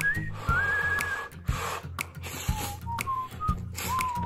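A man slurping yakisoba noodles from chopsticks, with a couple of noisy slurps in the first two seconds. Under them runs background music with a whistled melody.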